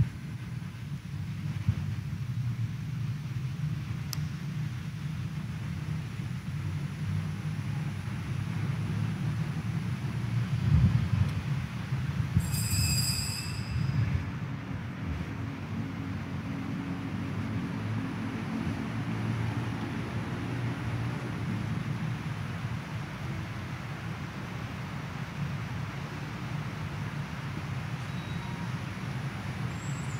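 A steady low rumble of background noise, with a brief high-pitched ring about twelve seconds in.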